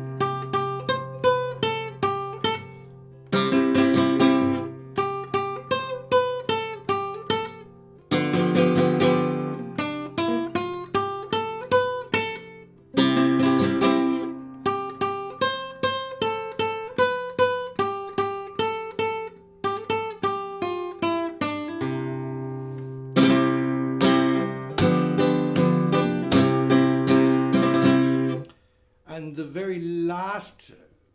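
Flamenco guitar playing sevillanas at a slow teaching pace: rasgueado strums and index-finger down- and upstrokes with golpe taps on the top, in short phrases of chord strokes broken by brief pauses. The playing stops near the end and a man's voice begins.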